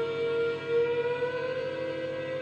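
Ondes Martenot holding a sustained, siren-like tone that slides slightly upward about a second in, over a steady drone.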